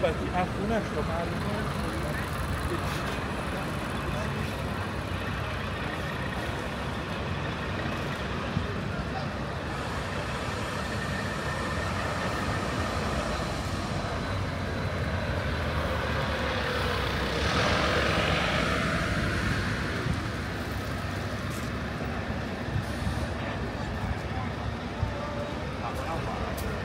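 City street traffic: double-decker buses and cars running past in a steady wash of engine and tyre noise. It swells louder about two-thirds of the way through as a vehicle passes close, with a hiss of air.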